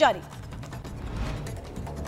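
News-bulletin transition sound effect: a rapid run of mechanical-sounding ticks and clicks over a low rumble, with a brief swell of hiss in the middle.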